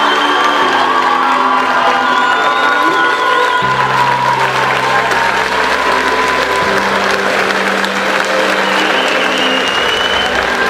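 Crowd of spectators applauding under background music of slow held chords that change about every three seconds.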